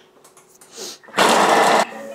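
Thermomix TM6 blades spinning at speed 5, chopping garlic and onion: one short, loud burst of under a second that cuts off suddenly.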